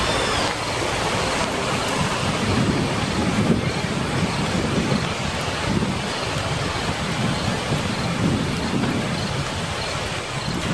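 Steady rain-like hiss with low rumbles that rise and fall every second or two, like a thunderstorm sound recording.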